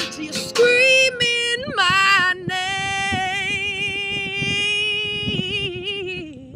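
A woman singing a long, wordless held note with vibrato over a strummed acoustic guitar. The note starts a couple of seconds in, holds for nearly four seconds, then drops and fades near the end as the guitar stops.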